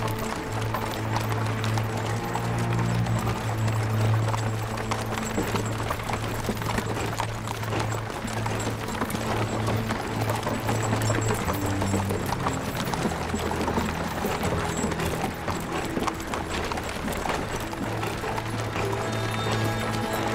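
Many horses' hooves clopping at a walk on a dirt forest track, under a dramatic film score with low held notes.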